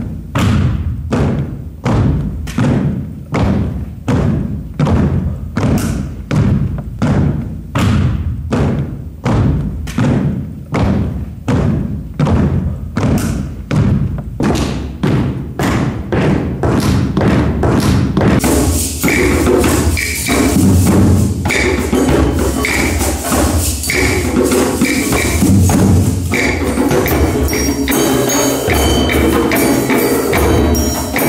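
A deep drum beaten in a steady, even beat, about one strong stroke a second. About two-thirds of the way in, a whole circle of hand drums joins in with shakers and bells, all playing together.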